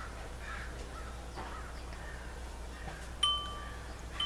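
A wind chime rings once near the end, a sudden clear metallic strike whose two tones hold for most of a second, over a low steady hum.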